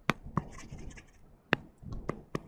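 Stylus tapping and scratching on a tablet screen while drawing: a few sharp clicks, the loudest about a second and a half in, with faint scraping between.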